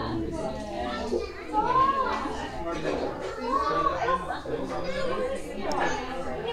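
Indistinct chatter of several people, children's voices among them, with a couple of high rising-and-falling calls about two and three and a half seconds in.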